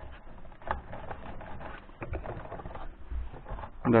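Hard plastic clicks, taps and scraping as a refrigerator's plastic top cover, which houses the thermostat knob, is handled and pushed into place. A few separate clicks stand out over the rustle.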